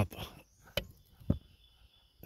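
Two small sharp clicks about half a second apart, from handling the plastic end fitting of a convertible-top tension cable seated in its slot in the roof rail.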